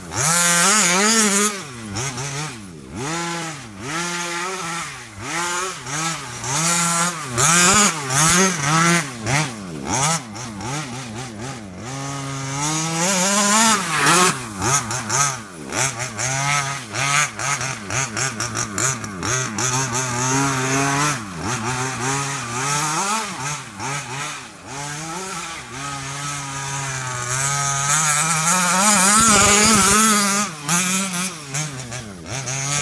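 Two-stroke petrol engine of a 1/5-scale Maverick Blackout MT RC monster truck, fitted with a DDM Racing tuned pipe, revving up and down again and again as the truck is driven. The loudest, highest revs come about a second in, around the middle and near the end.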